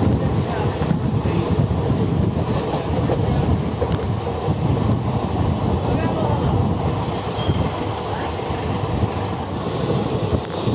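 Steady rumble of a moving passenger train heard from on board, the wheels running along the rails.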